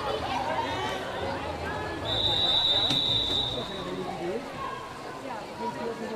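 Crowd chatter in a swimming hall, with one long, steady, high whistle blast from about two seconds in, lasting about two seconds: the kind a swimming referee blows to call the next heat onto the starting blocks.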